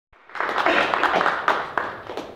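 Audience applauding, a dense patter of many hands clapping that starts just after the beginning and tapers off near the end.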